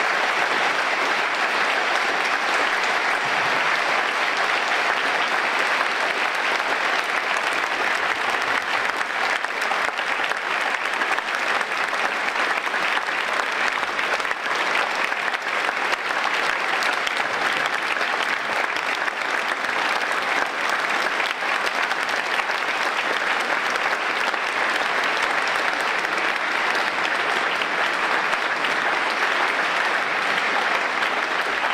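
Sustained applause from a large audience filling a hall, a dense, steady clapping that keeps up without a break.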